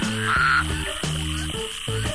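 Male spadefoot toads calling in a breeding chorus to attract females, with one short call standing out near the start, over background music.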